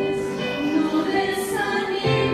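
Two women singing a church worship song through handheld microphones, holding long notes over a sustained instrumental accompaniment.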